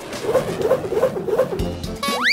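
Cartoon soundtrack: background music and a rushing whoosh, with about four short wavering cries in quick succession.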